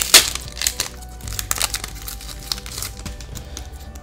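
Foil booster-pack wrapper crinkling loudly as it is pulled open just after the start, then quieter crinkling and rustling, over soft background music.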